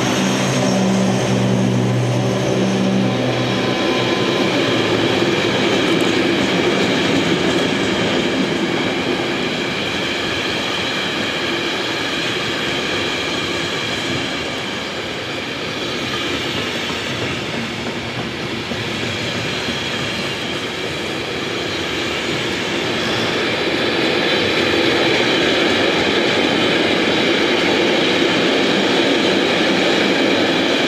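Container freight wagons rolling past close by: a continuous loud rolling noise of steel wheels on rails, easing slightly about halfway through and rising again. A low hum sits under it in the first few seconds and stops about three and a half seconds in.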